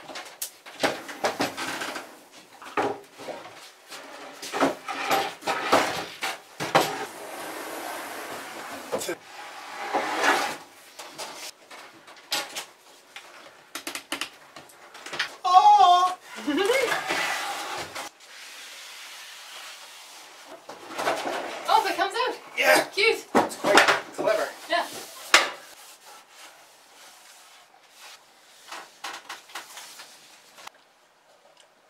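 Knocks, scrapes and clatter of wicker furniture being shifted and a plywood cabin-floor panel being lifted aside in a wooden boat's cabin, in irregular bursts with quieter gaps.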